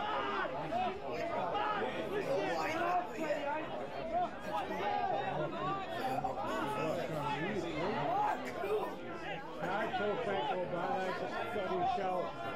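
Indistinct chatter of several people talking at once, steady throughout with no single voice clear.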